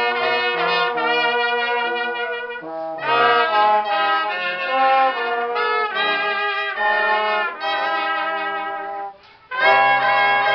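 A small amateur wind ensemble of trumpets, a clarinet and a low brass horn playing a slow piece in sustained chords, phrase after phrase with short breath breaks, one brief pause near the end before the next phrase starts.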